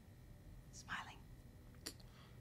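A short whispered word from a low, hushed voice about a second in, followed by a single faint click near the end.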